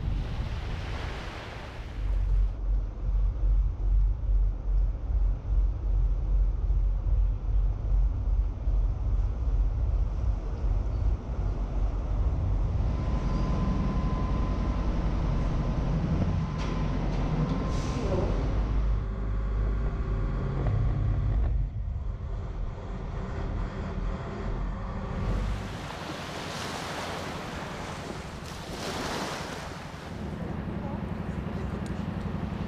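Heavy engine rumble, pulsing for the first several seconds, then mixed with clanks and a brief steady whine in the middle. It gives way to wind and sea noise near the end.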